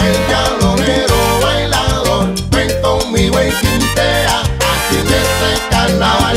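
Cuban timba (salsa) band recording playing an instrumental passage with a driving, rhythmic beat and heavy bass; no singing.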